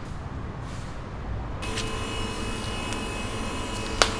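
A low rumble of street traffic, cut off about a second and a half in by a steady electric appliance hum with a thin high whine, as in a small kitchen. A few faint clicks come near the end.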